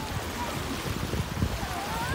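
Small choppy sea waves washing at the water's edge, with wind rumbling on the microphone.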